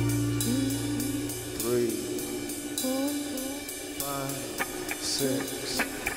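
A rock band playing live in a quiet passage: a sustained low chord dies away over the first second and a half, then short sung phrases that bend in pitch come over a thin backing, with a few light cymbal ticks in the second half.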